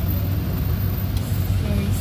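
Steady low rumble of road traffic, with cars passing close by.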